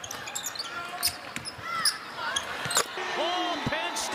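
A basketball bouncing on a hardwood court during live game play: a few sharp bounces under a second apart, with short high squeaks mixed in.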